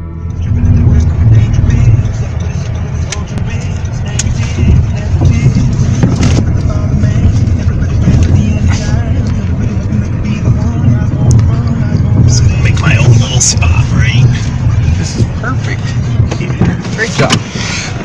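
Steady low rumble of a car on the move, heard from inside the cabin, with brief voices in the second half.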